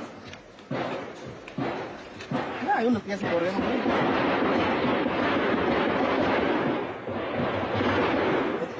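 Gunfire in a shootout, recorded on a bystander's phone: several sharp shots in the first three seconds, then a few seconds of dense, continuous noise, with people's voices in between.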